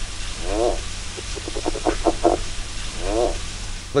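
California red-legged frog mating call: short runs of a few quick pulses, with a few notes that rise and fall in pitch between them, over a steady low hum.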